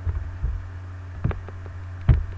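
A steady low electrical hum on the recording, with three soft low thumps: one at the start, one about half a second in, and a louder one about a second and a quarter in.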